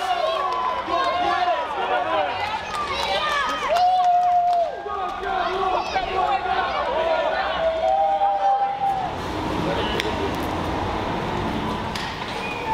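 A crowd of fans shouting and chanting, many voices overlapping, with two long drawn-out calls. About nine seconds in it gives way to a steadier murmur of crowd noise.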